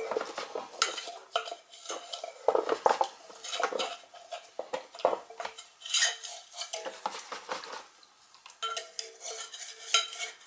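Oil line filter canister being handled by hand over a plastic catch container: a string of irregular clinks, scrapes and knocks.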